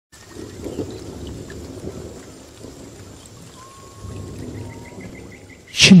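Low rolling thunder over a steady hiss of rain, a storm ambience swelling and easing, with faint short high chirps above it. A man's voice starts speaking just before the end.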